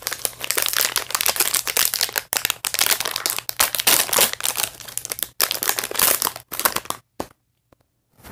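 Shiny foil toy packaging crinkling and tearing as it is pulled open by hand: a dense run of crackles with a few short breaks, stopping about seven seconds in.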